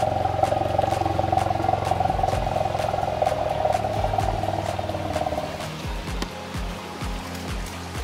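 A steady, pulsing drone of unidentified source that fades out about six seconds in; what makes it is not known.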